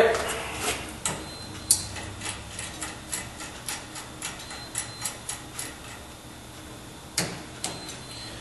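Irregular light clicks and taps, two or three a second and then two more near the end, from glass and plastic fittings being handled as the bubbler tube is unscrewed from the aeration-oxidation glassware.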